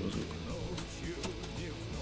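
Quiet background music with a steady pitched line, with a few faint clicks over it.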